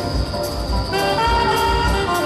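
A live jazz quartet plays, with a saxophone holding and sliding between sustained melody notes over an upright bass pulse and drums with cymbal strikes.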